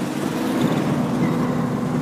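Car engine running at a steady cruise with road and wind noise, heard from inside the moving car.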